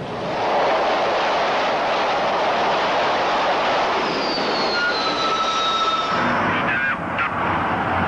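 Jet aircraft engine running with a steady rush. Partway through, a thin turbine whine sounds and drops slightly in pitch as the aircraft passes.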